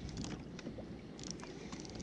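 Sea water lapping and sloshing against a plastic fishing kayak's hull, with wind on the microphone, and a few brief runs of sharp high clicks.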